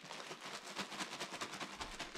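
Coated Rice Chex cereal rattling and ticking inside a plastic zipper bag as the bag is tipped and shaken, with the plastic crinkling.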